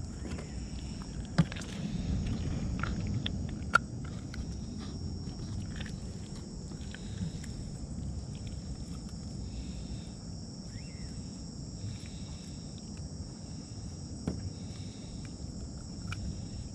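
Night insects, crickets, keep up a steady high-pitched chorus over a low rumbling background noise. Two sharp clicks come about a second and a half and about four seconds in.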